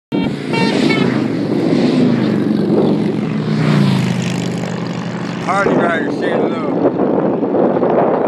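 Motorcycle engines droning, the pitch sliding down between about two and four seconds in as they go by.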